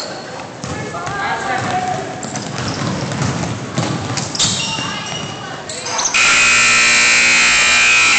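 Basketball bouncing on a hardwood gym floor, with players' voices echoing in a large gym. About six seconds in, a loud, steady buzzing tone cuts in suddenly and holds.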